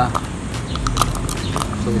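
A stick tapping and scraping hardened leftover surfboard resin in a small paper cup, several short sharp clicks: the resin has cured dry.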